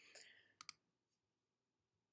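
Near silence broken by two quick computer mouse clicks, a fraction of a second apart, a little over half a second in, changing the slide.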